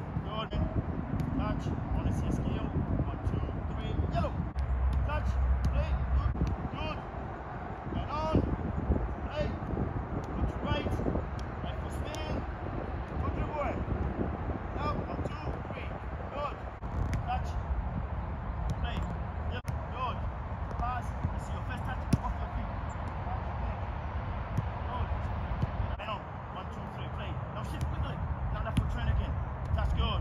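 Indistinct voices with occasional short thuds of a soccer ball being struck during dribbling on artificial turf, over a low rumble that comes and goes.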